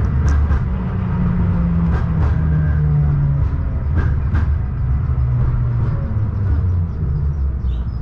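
KTM-19 (71-619KT) tram running, heard from inside the car: a steady low hum of motors and wheels on the rails, with a few sharp clicks and a faint whine that falls in pitch as the tram slows.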